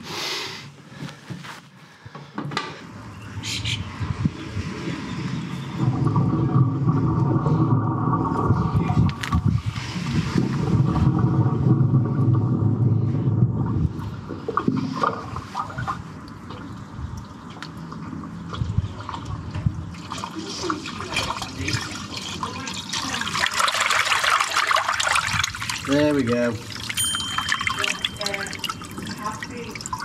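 Dirty water from the house drain running out of the incoming pipe into the manhole channel, growing to a noisy rush over the last ten seconds or so, a sign that the drain is flowing freely now. Earlier, from about six to fourteen seconds in, a louder steady drone stands out.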